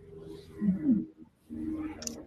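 Soft voice sounds without clear words, in several short pieces, from people on a video call.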